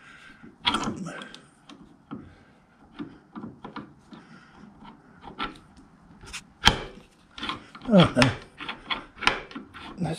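Steel die-holder body being worked by hand onto a one-inch keyed steel arbor: irregular metal-on-metal scraping and clicking as the freshly cut keyway is pushed and wiggled over the key. The fit is a little tight. A sharp click comes about two-thirds of the way in, followed by a burst of scrapes.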